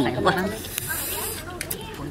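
A man's voice saying "mai wai" ("I can't take it") in Thai, then wet chewing of a mouthful of raw leaves with sharp mouth clicks and a short hiss of breath about a second in.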